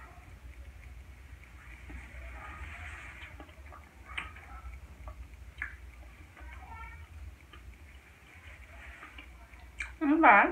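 Faint wet chewing and mouth sounds of a person eating a curry shrimp roti, with scattered small clicks, over a low steady hum.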